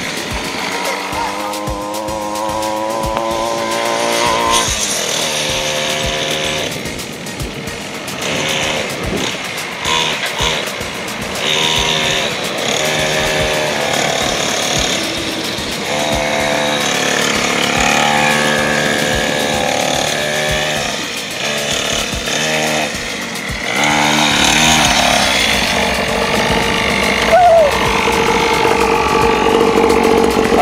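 X-PRO 50cc dirt bike's small engine revving up and dropping back again and again as it accelerates and slows, then running at a steady pitch near the end.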